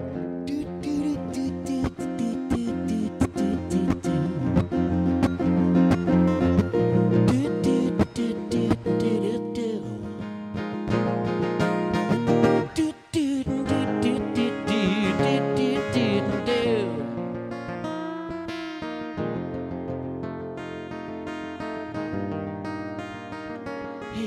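Steel-string acoustic guitar strummed in a brisk, steady rhythm, played live as a song begins. A singing voice comes in over it around the middle, and the playing thins out towards the end.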